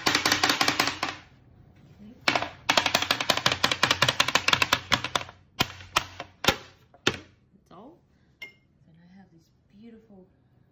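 Clear plastic chocolate-bar mould filled with tempered chocolate being tapped against a tray to settle the chocolate: two runs of fast, rattling taps, then a few single knocks.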